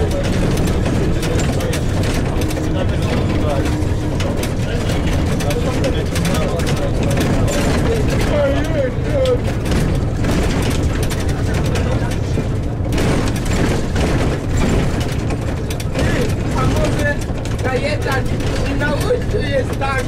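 Inside a Jelcz 120M city bus on the move: the diesel engine drones steadily under road noise, with constant rattling and clicking from the body and fittings.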